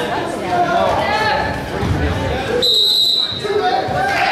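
Spectators' indistinct talk in a gym, then about two and a half seconds in a single referee's whistle blast: one steady high note lasting under a second.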